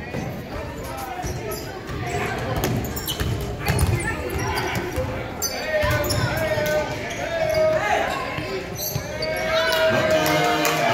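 Basketball bouncing on a hardwood gym floor during play, with voices from players and spectators echoing in the large hall.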